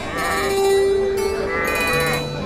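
Goats and sheep bleating, with two wavering calls, over background music.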